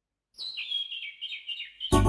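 A songbird chirping: a run of quick, high chirps starting about a third of a second in, used as the opening of a children's song track. Just before the end, music with a strong low beat begins.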